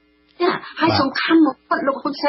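A person's voice speaking after a short pause, over a faint steady hum.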